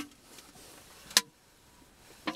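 A pause between spoken phrases: faint room tone with a single sharp click a little over a second in.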